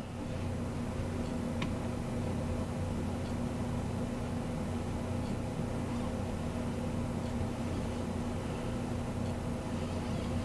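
A steady low hum of running machinery or electrical equipment, with a few constant low pitches in it, and one faint tick about a second and a half in.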